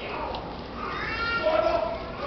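An actor's voice on stage: a drawn-out vocal call that rises in pitch and is held, with the ring of a large hall.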